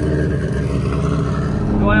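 A competition car's engine idling steadily.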